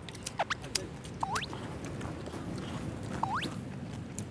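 Eating sounds: a few light clicks of chopsticks against bowls and three short squeaky rising sucks, near the start, about a second in and near the end, as chicken meat is sucked off the bones.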